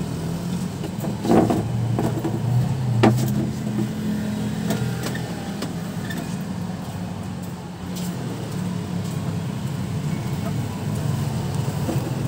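A motor vehicle engine running steadily in the background as a low hum, with a couple of sharp knocks about one and three seconds in.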